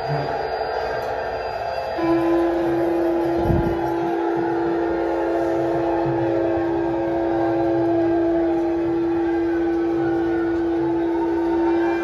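Conch shells being blown: one loud, steady horn-like note starts about two seconds in and is held for about ten seconds, over other fainter, wavering conch notes and a crowd's murmur. A dull low thump comes about three and a half seconds in.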